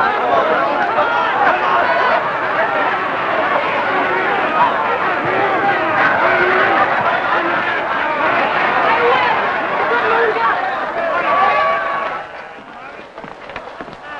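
Large racetrack crowd cheering and shouting during a horse race, many voices at once. It dies down suddenly about two seconds before the end.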